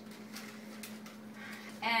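Light rustling and crinkling of a plastic produce bag as it is reached for and picked up, a few soft clicks in the first second, over a steady low hum.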